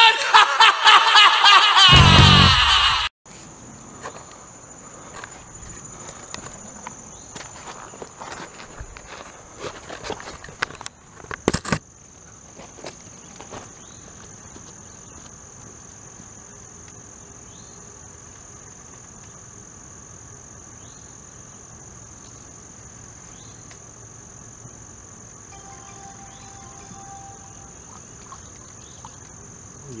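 Intro music for the first three seconds, then a steady high-pitched drone of insects in the waterside brush. Scattered knocks and rustles fall in the first several seconds after the music, with two louder knocks a little before the drone settles.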